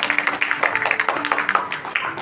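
An audience clapping, with background music of held notes playing under it; the clapping thins out near the end.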